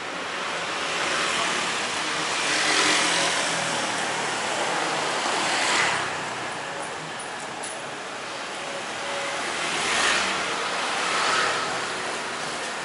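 Street traffic: cars and motorbikes passing close by, each swelling and fading, with four passes loudest about 3, 6, 10 and 11 seconds in.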